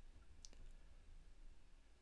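Near silence: room tone with one faint click about half a second in, from working the computer.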